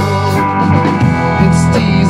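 Rock band playing live: electric guitar, electric bass guitar and a Tama drum kit together.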